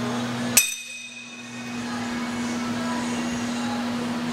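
A single sharp metallic clink that rings briefly, about half a second in, from a cable pushdown machine and its weight stack. A steady low hum runs underneath.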